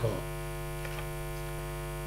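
Steady electrical mains hum with a stack of buzzing overtones, running at an even level under the recording.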